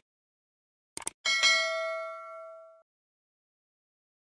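Subscribe-button animation sound effect: a quick mouse click about a second in, then a bright bell ding that rings for about a second and a half and fades away.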